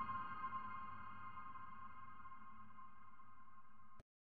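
Background music: a held, bell-like chord of several steady tones slowly fading, then cut off abruptly at the end.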